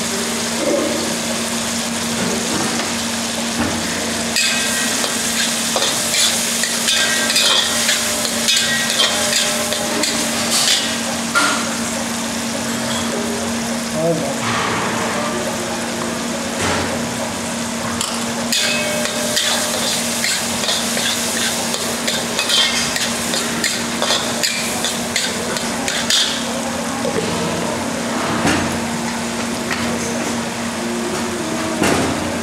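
Tomato and spice masala frying in ghee in a steel kadai, sizzling steadily, with clusters of short metallic clinks and scrapes at intervals and a steady low hum underneath.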